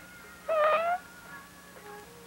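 One short high-pitched cry, about half a second long, rising slightly in pitch, over the low steady hum of an old film soundtrack.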